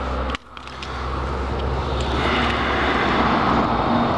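Street traffic noise, like a car going by: the sound drops out briefly just after the start, then an even rushing noise builds over the next two seconds and holds.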